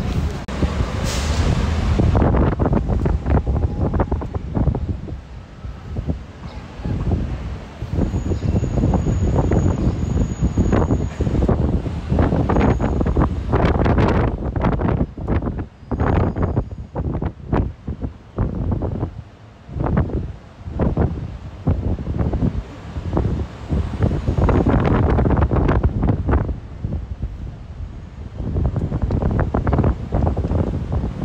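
Wind gusting over the microphone on a moving open-top tour bus, mixed with street traffic and engine noise. The level surges and drops unevenly, and a short hiss comes about a second in.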